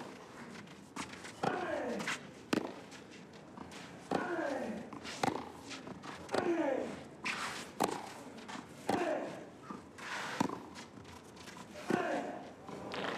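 Tennis rally on a clay court: racket strikes on the ball about every one to one and a half seconds, most followed by a player's short grunt that falls in pitch.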